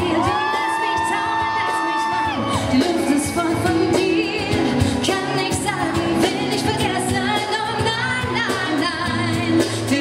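A woman singing a pop ballad live into a microphone, backed by a band with acoustic guitar. She holds one long note for the first couple of seconds, then carries on singing.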